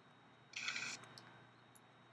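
Near silence broken about half a second in by one short, soft hiss, with a few faint clicks.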